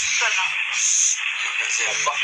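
Short bits of a voice over a steady hiss, heard through a poor, radio-like recording.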